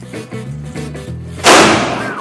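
Background music, with one loud firecracker bang about one and a half seconds in that fades within half a second.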